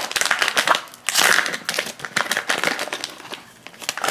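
Foil blind bag being torn open and crinkled by hand, a dense run of quick crinkles that is loudest in the first half and dies down near the end.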